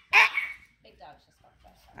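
A Chihuahua puppy gives one short yip just after the start, followed by faint scuffling and small sounds from puppies tussling.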